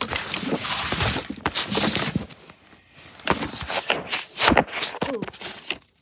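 Toys being rummaged through in a plastic storage bin: a busy rustling and clattering of plastic and soft toys being pushed about for the first two seconds, then scattered single knocks and clicks.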